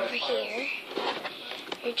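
A girl's wordless voice sliding up and down in pitch for about a second, followed by a quieter stretch with a few faint clicks.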